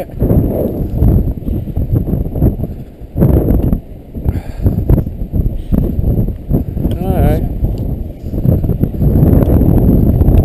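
Wind buffeting the microphone while walking through snow, with irregular footsteps, and a brief wavering voice-like sound about seven seconds in.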